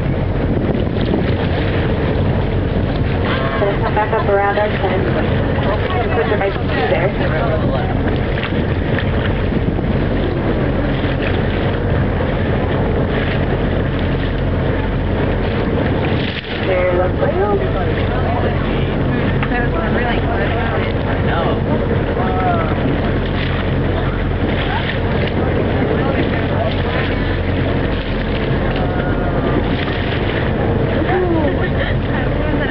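Whale-watching boat's engine running at a steady drone, with wind buffeting the microphone.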